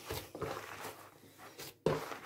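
A hand kneading and squeezing moist bulgur dough in a plastic bowl: faint soft squishing and rustling with a few small ticks, and one sharp knock just before the end.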